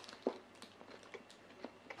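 Faint chewing of a bite of chocolate-coated protein bar: a few soft clicks and mouth sounds.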